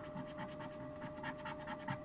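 A thin stick scraping the latex coating off a spot on a paper lottery scratch-off ticket to uncover a winning number, in quick, faint back-and-forth strokes of about eight a second.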